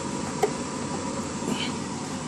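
Steady background hiss with one light click about half a second in, as a plastic mech model figure is set down inside a plastic display hangar.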